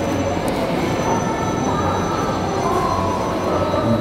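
Steady background din of a busy fast-food restaurant: an even wash of indistinct voices and room noise.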